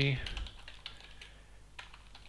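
Typing on a computer keyboard: a string of short, light key clicks at an uneven pace.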